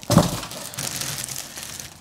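Clear plastic bag crinkling as it is pulled down off a carpeted subwoofer box, opening with a louder thump and then a steady rustle that fades out.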